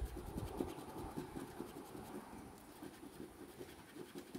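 A coin scratching the coating off a paper scratch-off lottery ticket in quick, repeated short scrapes.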